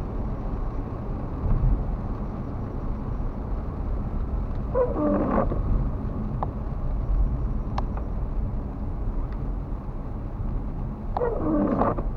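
Car cabin on a wet road: steady engine and tyre rumble, with the windshield wipers sweeping over the rain-wet glass about every six seconds. Each sweep is a brief rubbing groan from the wiper blade on the windshield, around five seconds in and again near the end.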